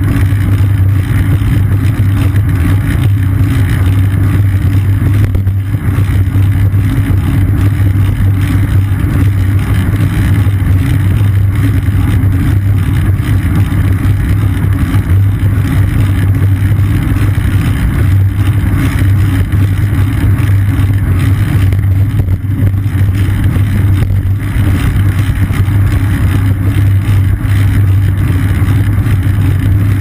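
Steady, loud low rumble of wind and road vibration picked up by a seat-mounted GoPro on a moving bicycle.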